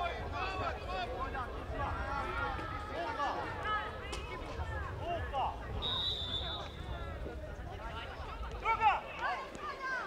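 Unintelligible calls and shouts from youth footballers and people around the pitch. About six seconds in, a steady high whistle sounds for about a second.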